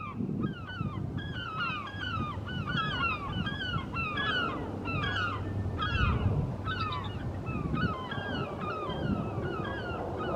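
Birds calling over and over, a dense chatter of short, curved, high notes, several a second, over a low rumble.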